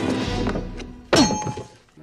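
Slapstick film sound effects over the orchestral score: a crash that fades over the first second, then a single sharp thunk about a second in, with a brief ringing after it.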